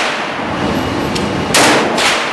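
.44 Magnum revolver fired once, about one and a half seconds in: a sharp crack that rings on in an indoor range. The echo of the previous shot is dying away at the start.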